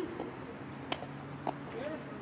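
Distant voices calling out during a ground-ball play to first base, with a few sharp knocks, the clearest about a second and a half in, over a steady low hum.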